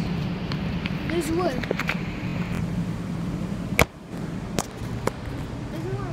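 Handling noise from a phone being swung about, over a low steady hum and faint voices, with one sharp knock about four seconds in and a couple of lighter clicks after it.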